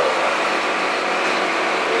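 Steady, unchanging hum of a fishing boat's running machinery, heard inside the wheelhouse.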